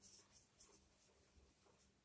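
Near silence, with the faint scratching of a marker pen writing on a whiteboard in short strokes.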